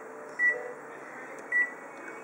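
Two short electronic key beeps from a colour photocopier's touchscreen control panel as its buttons are pressed, about a second apart.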